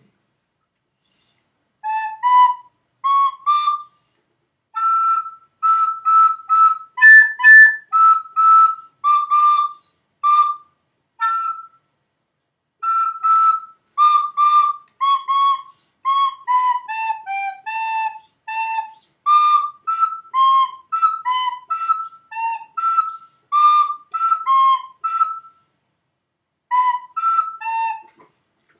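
White plastic soprano recorder playing a simple Chinese New Year melody, one note at a time in short, separately tongued notes. It starts about two seconds in and pauses briefly twice between phrases.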